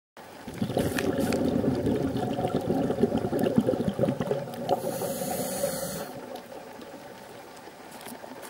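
Muffled water noise on an underwater camera: uneven rumbling and sloshing with small crackles, with a brief hiss about five seconds in. It drops to a faint steady wash about six seconds in.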